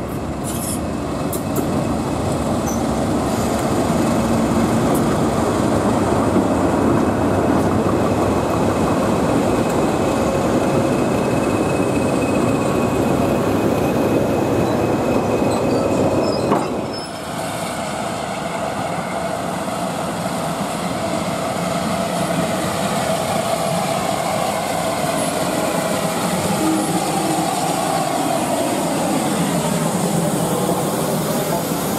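A train moving through a station: a diesel locomotive's engine running and passenger coaches rolling past, with wheel squeal. About halfway through the sound breaks off abruptly, then train noise carries on.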